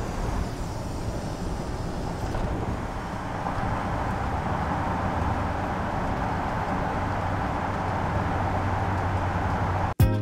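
Steady engine and road noise heard inside a van's cabin while it drives on a highway, a continuous rumble with a low hum.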